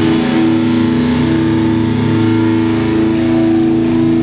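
Distorted electric guitars and bass holding one sustained, droning chord that rings on steadily with no drums.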